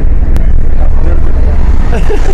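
Steady low engine rumble of a minibus, loud inside its cabin, with people talking over it.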